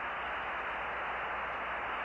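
Steady hiss of radio static on an open air-to-ground voice channel, with no voice on it.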